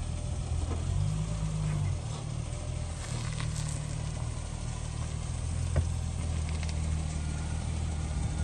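A car engine idling steadily, with a low even hum and a brief rise in the engine note between about one and two seconds in.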